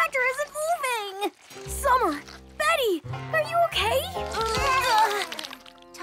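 Wordless cartoon character voices, with straining and exclaiming sounds that swoop up and down in pitch, over children's background music.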